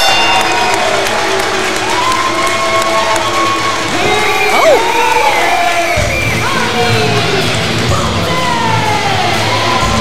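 Arena crowd cheering and yelling after a pinfall win, with music playing over it. A heavier bass beat comes in about six seconds in.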